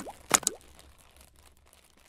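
Intro logo-animation sound effects: sharp clicks and a short upward-sliding pop in the first half second, then a fading tail.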